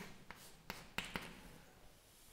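Chalk on a chalkboard writing a few letters and an equals sign: faint scratching with about four short taps in the first second or so.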